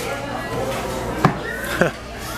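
Shop background noise with faint voices, broken by a sharp knock about a second in and a second click near the end.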